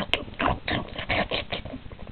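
A person making quick gobbling, pig-like eating noises with the mouth to voice a toy character wolfing down food: a rapid run of short noisy bursts.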